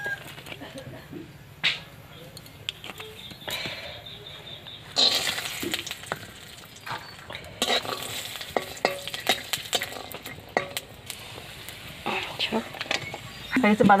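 Peanuts frying in a little oil in a metal kadai, sizzling, while a metal spatula stirs and scrapes them against the pan. The sizzling thickens about five seconds in.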